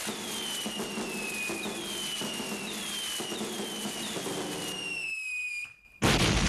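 Fireworks whistling: a run of about five falling whistles, each about a second long, over a crackling background. The sound drops away briefly near the end.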